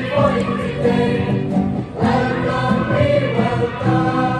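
Boys' choir singing a welcome song through microphones, accompanied by strummed acoustic guitars.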